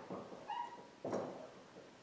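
Dry-erase marker strokes on a whiteboard, faint, with a short high squeak from the marker tip about half a second in and another stroke about a second in.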